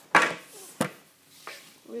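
Two sharp knocks from a hockey stick being handled, most likely knocking against another stick or the floor. The first knock is the loudest and rattles briefly, and the second, shorter one follows about two-thirds of a second later.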